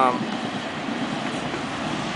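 Steady outdoor traffic noise with a passing train among it, an even rumble and hiss with no distinct events.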